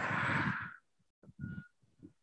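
A woman's audible breath out through the mouth, lasting under a second and fading away, timed with the effort of curling up in an abdominal crunch. A brief faint sound follows about a second and a half in.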